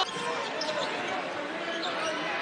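Basketball arena sound during live play: steady crowd noise, with the ball bouncing on the hardwood court.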